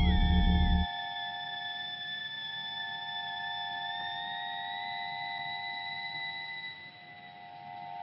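Breakdown in a breakbeat rave track: the bass and beat cut out about a second in, leaving sustained synth tones, with two higher tones slowly rising in pitch.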